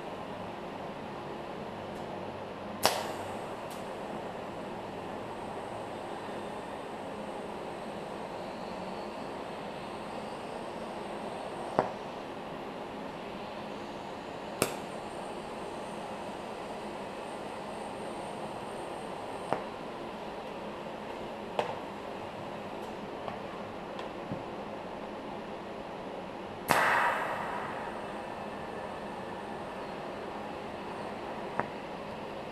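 TIG welder tack-welding steel A-arm tubing: a steady hiss and hum of the arc and machine, broken by several sharp metallic clicks and clanks, the loudest near the end.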